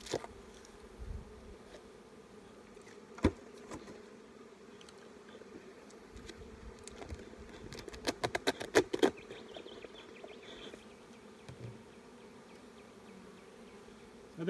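Honeybees humming steadily around an open hive. A sharp knock comes about three seconds in, and a quick run of clicks and cracks around eight to nine seconds as the hive lid is levered off with a metal hive tool.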